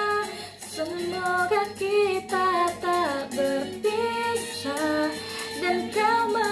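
A young woman singing an Indonesian pop ballad solo, holding notes and gliding between them in melodic runs, with a falling run about three seconds in.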